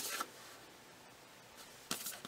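Brief rustles of paper and clear plastic packaging being handled by hand: a short swish at the start and another near the end.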